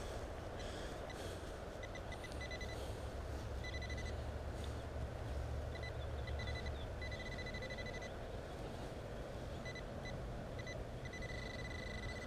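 Metal detector's electronic tone sounding on and off in short beeps and longer held tones, over a low wind rumble on the microphone.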